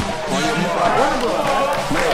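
Men's voices talking and calling out over one another, with no clear words.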